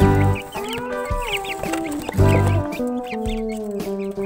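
Domestic chickens clucking over background music, whose deep beat comes about every two seconds and is the loudest thing heard.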